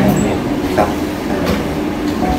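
A man's voice ends a sentence in the first moment, then a steady low rumble of background noise continues, with a few faint clicks.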